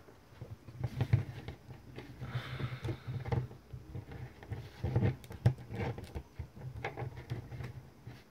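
Plastic action figures handled and set upright on a tabletop: scattered light clicks and taps of plastic on plastic and on the table, with soft bumps and a brief rustle a couple of seconds in.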